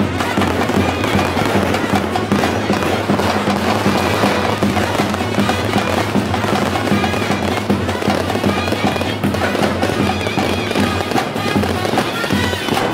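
Fireworks crackling and bursting in a dense, continuous barrage, with music playing underneath throughout.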